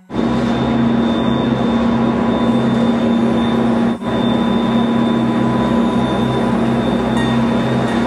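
Cable-car (gondola lift) station machinery running: a loud steady mechanical hum with a constant high whine over it, dipping briefly about halfway through.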